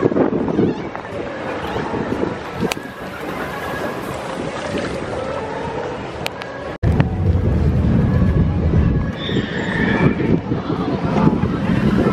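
Wind buffeting the camera microphone over open water, with water lapping, from a small boat. The sound drops out abruptly about seven seconds in and comes back with a heavier low rumble of wind.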